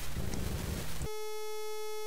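Wind rumbling on the microphone. About a second in, it cuts out and a steady, buzzy single-pitch tone sounds for about a second, then stops abruptly.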